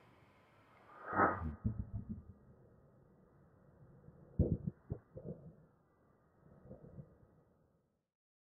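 Faint, irregular low thuds and scuffs from a tennis player moving on a hard court after his serve. One louder sound comes about a second in, and a few thuds follow around five seconds in and again near the end.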